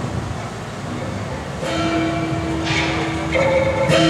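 Crowd noise, then about halfway a steady held note starts, joined near the end by further notes and metallic crashes as procession music strikes up.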